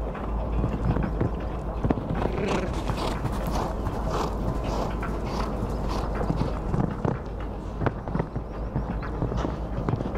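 Hoofbeats of a show-jumping horse cantering on a sand arena, a steady run of repeated thuds.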